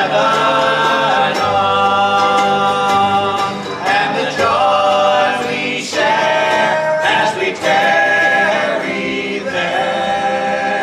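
Male trio singing a gospel hymn in close harmony, backed by picked acoustic guitar and mandolin in a bluegrass style, with short breaks between sung phrases.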